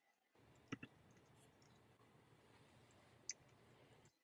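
Near silence: faint room noise with three brief clicks, two close together about a second in and one more near the end.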